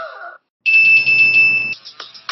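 Electronic alarm beeping: a loud, high-pitched beep lasting about a second, sounding as a low-battery warning.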